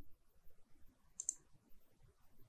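A faint computer mouse click, heard as a quick double tick a little past the middle, as a point is picked on screen.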